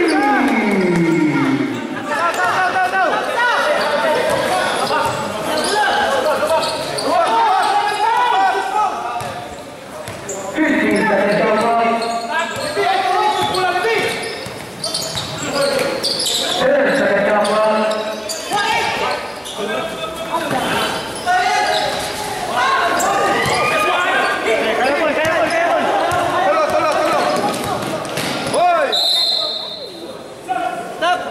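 Basketball game in a gym: many voices of players and spectators calling and shouting throughout, with a basketball bouncing on the court. Near the end, one short high-pitched whistle blast, typical of a referee's whistle.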